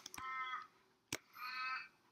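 A crow cawing faintly, two harsh caws about a second and a half apart, with a single sharp click between them.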